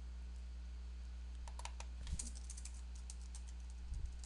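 Typing on a computer keyboard: a run of light key clicks beginning about a second and a half in, over a low steady hum.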